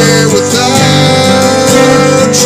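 A song's loud instrumental passage led by guitar, with notes bending in pitch.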